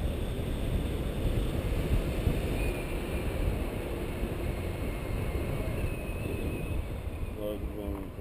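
Airflow buffeting the camera's microphone in paraglider flight: a steady rumbling wind noise that gusts unevenly. A voice is heard briefly near the end.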